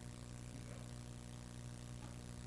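A steady low hum in an otherwise quiet room, unchanging throughout.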